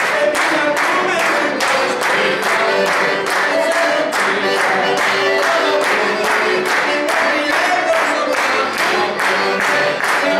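Diatonic button accordion playing a lively tune with singing, over a steady beat of hand-clapping in time, about three claps a second.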